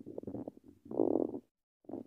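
Rubbing and knocking on a handheld phone's microphone as it is swung around: irregular low rustles and clicks, with a louder, rougher rub about a second in.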